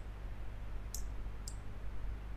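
Two computer mouse button clicks about half a second apart, over a steady low hum.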